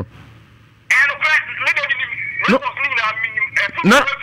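Speech coming through a mobile phone's speaker held up to a microphone: thin, narrow-band telephone voice. It starts about a second in, after a short lull.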